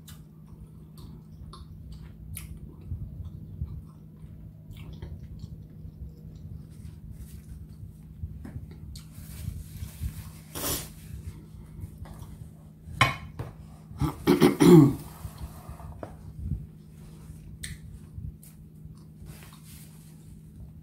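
Quiet eating sounds: chewing with small clicks and rustles, and a paper napkin rubbed over the hands about ten seconds in. About fourteen seconds in comes a throat clearing, the loudest sound, over a steady low hum.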